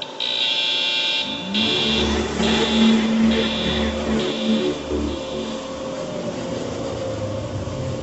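Warning alarm of an earthquake shake table beeping in a steady high pulse about once a second, fading after about five seconds. About one and a half seconds in, the table's hydraulic machinery starts with a short rising hum that settles into a steady low drone.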